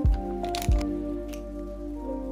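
Holographic plastic pouch crinkling and crackling as it is handled, with sharp crackles at the start and again under a second in, over soft background music.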